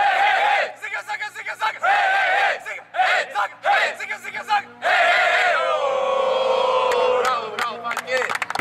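A football team chanting together in a huddle: short rhythmic shouts, then from about five seconds in one long drawn-out group shout that slowly falls in pitch.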